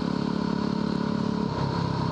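A Yamaha WR250R's 250 cc single-cylinder four-stroke engine running steadily under way on the road. Its note drops about one and a half seconds in as the revs fall.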